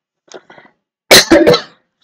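A man coughing: a loud, quick run of two or three coughs about a second in.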